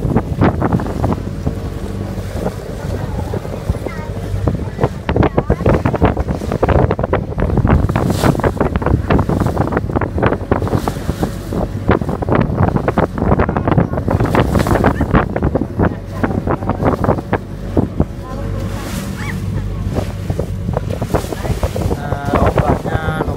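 A small boat under way at sea: wind buffeting the microphone and water splashing along the hull, over the boat's steady low engine drone.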